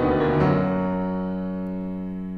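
Solo piano: a loud full chord struck just as it begins, with a further accent about half a second in, then held and left to ring, slowly fading.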